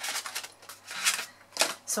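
Clear plastic die packaging being handled, crinkling and clicking in four or five short bursts.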